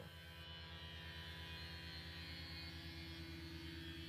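Faint, steady low hum with a slight pulse in it.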